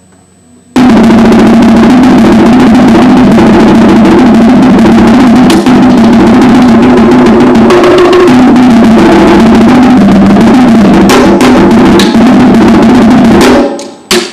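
Marching tenor drums played in a continuous run of rapid strokes across drums of different pitch, starting about a second in and stopping just before the end. The recording is overloaded, so the playing sounds distorted.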